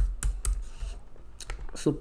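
Typing on a computer keyboard: a handful of irregular key clicks as a line of code is entered.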